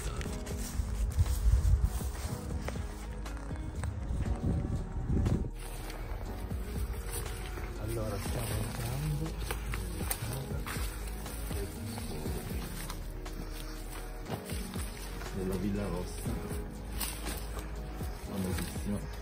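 Background music with held tones, over faint voices and footsteps pushing through undergrowth.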